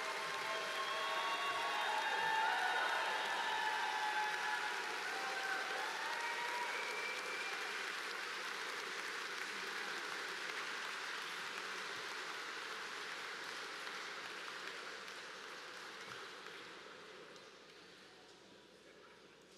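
Audience applauding, with a few cheers over it in the first few seconds. The clapping peaks early and then slowly dies away.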